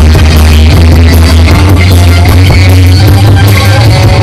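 Live rock band playing loud: electric guitars and drum kit over a low bass note held through the whole stretch.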